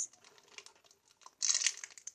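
Clear plastic bag crinkling in the hands, a short burst about a second and a half in after a nearly quiet start.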